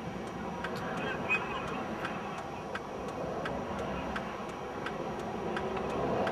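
Steady noise of freeway traffic heard from inside a car stopped on the shoulder, with a fast, regular ticking of about three ticks a second running through it.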